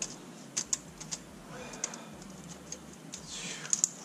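Scattered light clicks and taps of gloved fingers on a multi-layer steel head gasket and the bare block deck of an LS1 V8 as the gasket is worked loose, with a faint scrape near the end.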